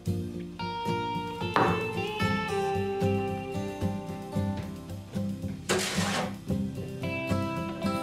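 Gentle background music led by plucked acoustic guitar, with a brief rushing noise about six seconds in.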